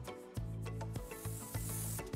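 Background music, joined about a second in by the steady hiss of an airbrush spraying dye onto leather.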